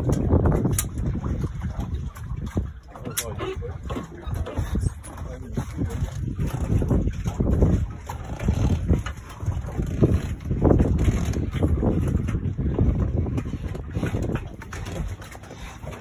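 Wind rumbling on the microphone, with indistinct voices of people talking on the boat.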